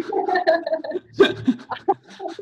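Laughter from people on a video call, coming in short, choppy bursts.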